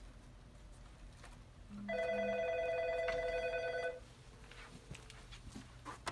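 Business desk telephone giving one electronic ring: a warbling two-tone trill lasting about two seconds, starting about two seconds in, with two short low beeps just as it begins.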